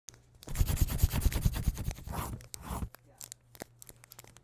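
Rapid, scratchy rustling of paper for about two and a half seconds, then a few scattered light ticks.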